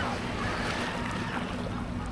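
Small waves washing at the shoreline, a steady even hiss with no distinct events.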